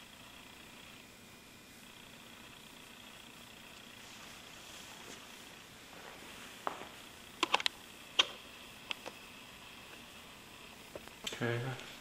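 Quiet room hiss, then a handful of sharp light clicks and taps a little past halfway, several in quick succession, from painting tools being handled at the work table. A man's voice begins just before the end.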